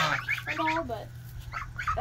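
A young goose gives a short call about half a second in, against a steady low background hum.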